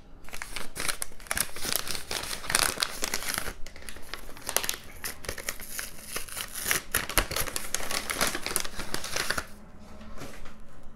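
White paper wrapping crinkling and rustling as it is opened and pulled off a small box by hand, a dense run of crackles that stops about half a second before the end.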